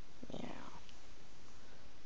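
A person saying a single soft, half-whispered "meow", imitating a cat.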